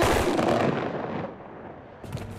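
A ceremonial rifle volley fired together by a military honour guard: one sharp crack at the start, echoing and dying away over about a second.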